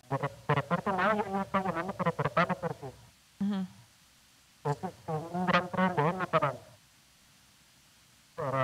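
A person talking over a telephone line in two stretches, the words not clear enough for the recogniser to pick up.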